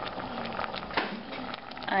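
Water and lemon juice simmering in a stovetop pot with a salmon fillet poaching in it, a crackling bubble, with one sharp click about a second in.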